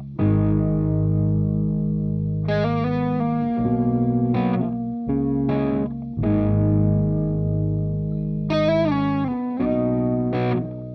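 Instrumental intro of a rock song: distorted electric guitar playing held chords that change every couple of seconds, with a higher melody line that slides in pitch near the end.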